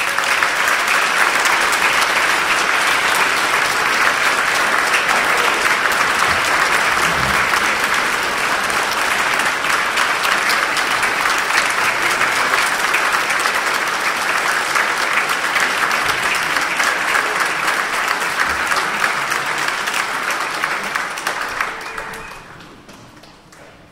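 An audience applauding steadily, dying away near the end.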